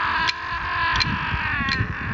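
A long sung call held for most of two seconds, fading near the end, over clapsticks struck about every 0.7 seconds, with low thuds of dancers' feet underneath.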